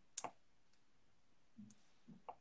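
A single sharp click a fraction of a second in, then a soft low knock with a faint click near the end, against a quiet room: small handling noises of pens on paper and a desk while drawing.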